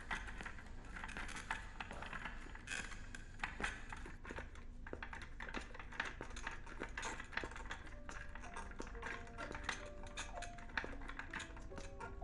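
Background music: a soft melody of single notes comes in about two-thirds of the way through, over a steady run of irregular light clicks and taps.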